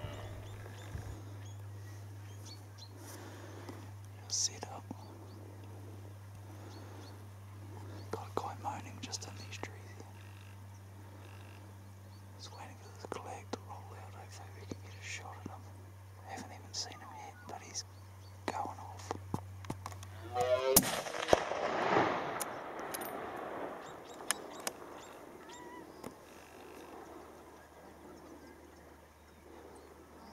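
A single hunting rifle shot about two-thirds of the way in: one sharp crack followed by a rolling echo that dies away over a couple of seconds. Before it, only faint whispers and small rustles.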